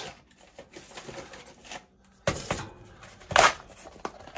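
Rummaging and handling of small objects: soft clicks and rustles, with two louder clattering rustles about two and a half and three and a half seconds in.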